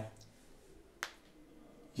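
A single short, sharp click about a second into a quiet pause.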